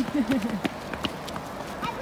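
Footsteps on a wet pavement, a few sharp steps a second. A short burst of a person's voice comes right at the start.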